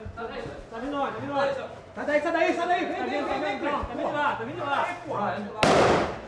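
Voices calling out without a break during a police advance under fire, then a single loud bang near the end.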